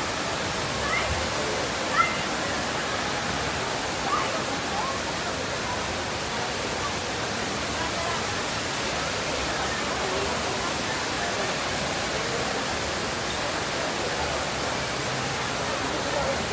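Steady rush of a large indoor waterfall, the Rain Vortex at Jewel Changi Airport, with faint voices of people around it.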